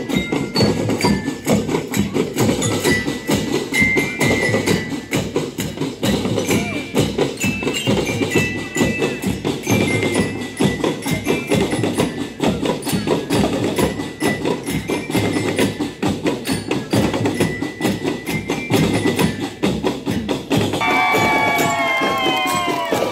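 A school marching drum band playing: snare, tenor and bass drums beating a dense, fast rhythm, with high chiming melody notes ringing over them. Near the end a falling, sliding note sounds over the drums.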